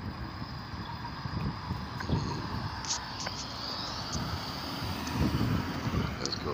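Road traffic: cars driving past on the road as a steady hum of tyres and engines, swelling a little about five seconds in.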